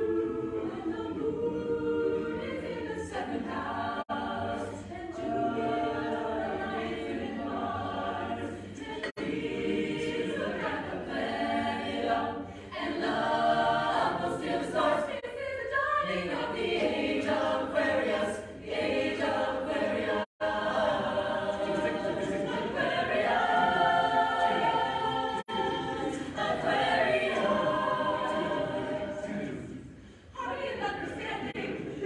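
Co-ed a cappella group singing an unaccompanied pop arrangement in close multi-part harmony, voices alone with no instruments. The sound drops out for a split second about two-thirds of the way through.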